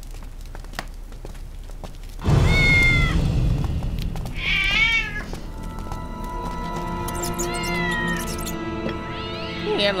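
A cat shut in a small wooden cage meowing about four times, the calls bending in pitch, the second one wavering. Loud music comes in suddenly about two seconds in and runs under the calls.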